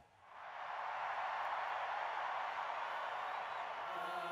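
Large stadium crowd cheering, swelling over the first second and then holding steady.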